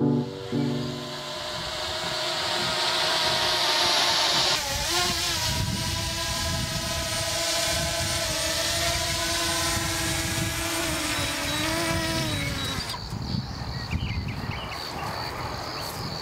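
Small quadcopter drone hovering low overhead, its propellers giving a buzzing whine that wavers up and down in pitch, over a steady rush of air noise. The whine stops about three seconds before the end. Piano music fades out in the first second.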